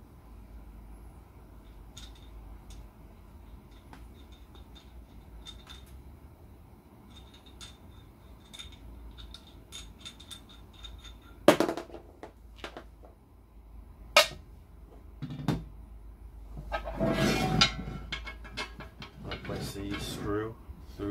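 Faint clicks and ticks of metal parts being handled and twisted on the steel pillar of a microscope stand, then a few sharp knocks as the pillar and the base plate are set down and turned over on a wooden floor. Near the end comes a louder stretch of rubbing and handling noise.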